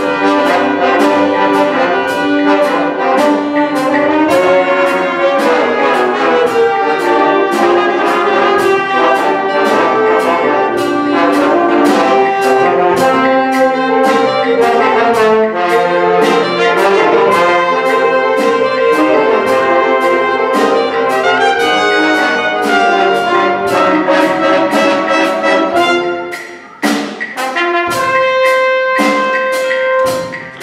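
School jazz band playing a Latin jazz tune in six-eight: brass and saxophones in full ensemble over steady percussion. Near the end the band breaks off suddenly, then a few long held notes sound.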